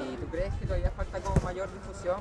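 Voices talking at a moderate level over a few dull thuds from football training on a dirt pitch, the sharpest thud about a second and a half in.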